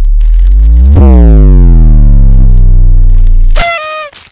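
A loud, harsh, electronic-sounding low buzzing tone that starts suddenly and wavers in pitch. It cuts off near the end into a brief high squeal.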